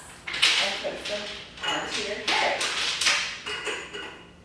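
A woman's voice speaking in short phrases, fading near the end.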